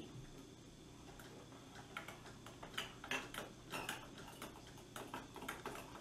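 Metal measuring spoons clicking lightly against small plastic cups as liquid is spooned from one cup into the next. The clicks come in an irregular scatter, starting about two seconds in.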